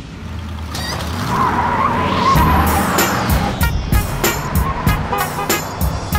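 Car tyres squealing for about two seconds, over a low engine note. Music with a steady beat comes in about three and a half seconds in.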